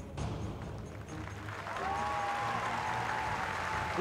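Audience applause in a large hall, building up about a second in, over the closing music of a tribute video.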